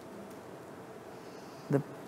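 A pause in speech: quiet room tone with a faint steady hum. A woman's voice briefly starts a word near the end.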